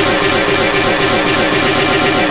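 Loud, chaotic breakcore/gabber electronic noise music: a dense, rapid beat with quick falling pitch sweeps. It cuts back in abruptly at the start after a brief gap.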